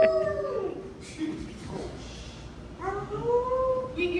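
A person's voice in long, drawn-out howls, twice: one fading out within the first second, another starting about three seconds in.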